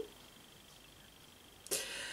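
Quiet room tone with a faint steady high-pitched tone, then near the end a woman's short, audible breath just before she speaks.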